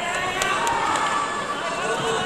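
Several people's voices talking and calling out over one another, with two short sharp clicks about half a second in.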